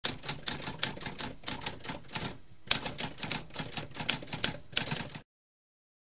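Typewriter keys clacking in a quick, irregular run of strokes, with a brief pause a little before halfway, stopping abruptly after about five seconds.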